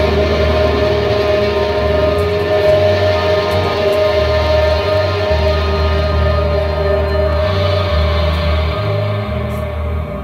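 Electric guitar and bass guitar played live through amplifiers, with no singing: the guitar holds long sustained notes while the bass moves between low notes underneath. The upper treble thins out after about seven seconds.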